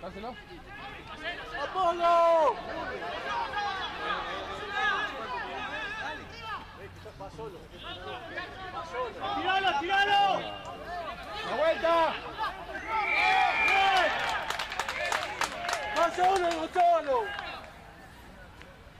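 Men's voices shouting and calling out across a rugby pitch during open play and a tackle, in loud bursts through the whole stretch. A quick run of sharp clicks comes near the end.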